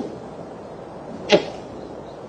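A single heavy footstep on wooden floorboards about a second and a half in, over the steady hiss of an old film soundtrack.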